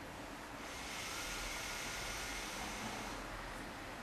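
A person breathing audibly: one long, hissing breath swells in about half a second in and fades near the end, over a steady background hiss.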